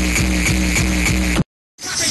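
Hardcore techno played loud over a festival sound system, driven by a fast distorted kick drum at about four kicks a second. It cuts off suddenly about one and a half seconds in, and after a brief silence different music starts.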